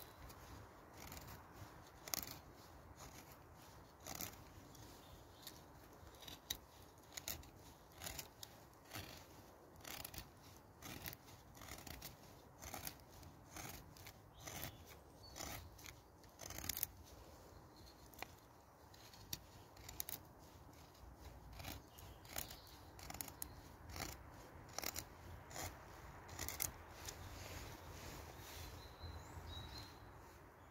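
Knife blade shaving thin curls off a stick of wood to make a feather stick for kindling: a faint, even series of short scraping strokes, roughly one or two a second.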